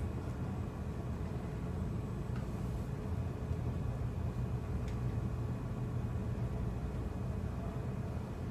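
Steady low rumble of room noise, with two faint clicks about two and a half and five seconds in.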